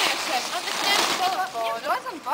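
High-pitched women's voices talking and calling out, including a briefly held note near the end, over a hiss of outdoor noise around the middle.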